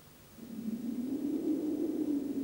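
After a brief silence, a low, wavering hum fades in about half a second in and holds steady: the opening drone of a TV advertisement's soundtrack.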